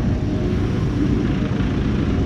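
Small rear-loader garbage truck's diesel engine running close by as the truck moves slowly alongside, a steady rumble with no breaks.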